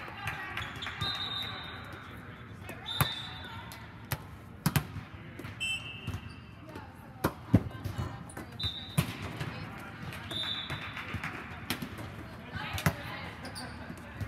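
Volleyballs being hit and bouncing on the hard court floor inside a large air-supported sports dome: sharp smacks at irregular moments, the loudest about seven and a half seconds in, over a background of distant players' voices.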